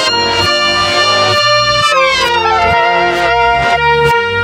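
An instrumental recording of clarinet-led easy-listening music played backwards. Sustained pitched notes are heard, with a downward pitch slide about two seconds in.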